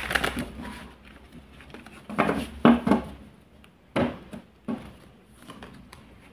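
A deck of tarot cards handled by hand: shuffled and cut, with soft rustling and a few sharp card snaps or taps about four and five seconds in.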